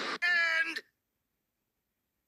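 A rushing explosion noise cuts off a fraction of a second in. It gives way to a short, loud cat-like meow lasting about half a second.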